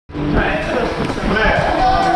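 Several dull thuds of feet landing on foam-padded wedge obstacles as an athlete bounds across them, over the chatter of many voices.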